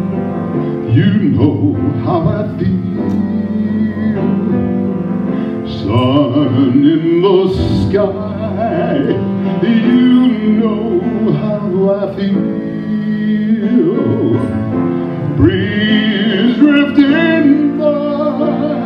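A man singing, with wavering held notes, to his own grand piano accompaniment.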